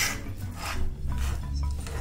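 A metal fork scraping through oyster mushroom flesh against a wooden board in repeated rough strokes, tearing the mushroom into stringy shreds.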